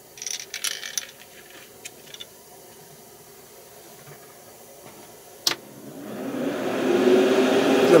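Light handling rustles and small clicks as the lure is fitted into its holder, then a sharp click about five and a half seconds in, after which a small motor starts and builds up over a second or two to a steady hum that is loudest near the end.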